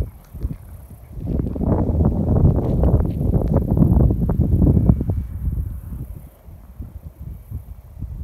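Wind buffeting the microphone in gusts, a rough low rumble that swells about a second in and dies down toward the end.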